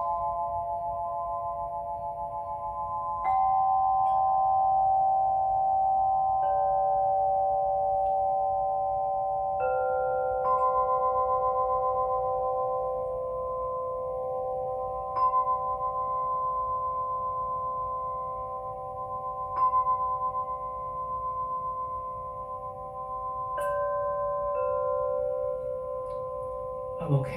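Quartz crystal singing bowls struck one after another with a mallet, about eight strikes, each giving a pure tone that rings on for many seconds. The tones overlap into a layered chord with a slow wavering pulse.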